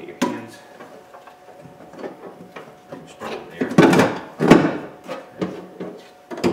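Metal power window regulator being slid back out of its track inside a van's door shell: a series of metal clunks and scrapes, loudest about four seconds in.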